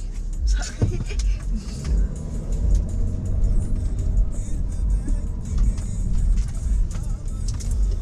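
A BMW's low engine and road rumble heard from inside the cabin as the car pulls away and drives on a city street, with music playing.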